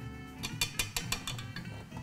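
A rapid run of small clicks lasting about half a second, as the stand mixer's whisk attachment and bowl are handled and taken off, over background music.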